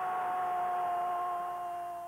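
One long held tone with a few clear overtones, steady and sagging slightly in pitch as it fades near the end, over stadium crowd noise as a goal is replayed.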